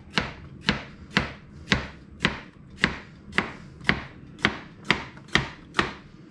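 Kitchen knife slicing a peeled, seeded cucumber into half-moons on a plastic cutting board: a steady chop about twice a second, each stroke ending in a knock on the board.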